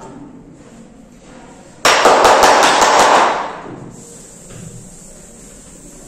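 Chalkboard duster being handled: a sudden loud burst of rapid knocks and scraping starts about two seconds in and lasts just over a second, then only faint rubbing remains.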